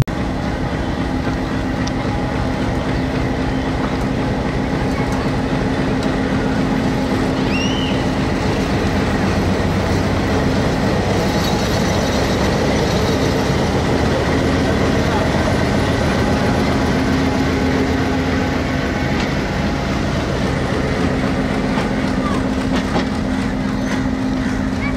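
Diesel-electric locomotive and its express train passing close by: the engine runs with a steady hum, and the coaches' wheels roll on the rails in a continuous, even rumble.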